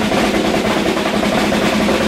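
Recorded rock drum intro: a fast, even snare drum roll held at a steady loudness.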